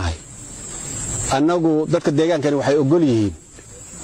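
A man speaking for about two seconds in the middle. Before and after his words there is a steady hiss of background noise, which rises in level during the first pause.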